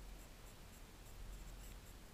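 Near silence: a faint, even hiss with a low rumble underneath, ambient noise on the camera's microphone on an open snow slope.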